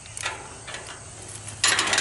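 Rigging hardware (carabiners and a crane scale on a sling) clicking and rattling against the aluminum tower's crossbars as it is hooked on, a few separate clicks and then a quick run of rattling clicks near the end.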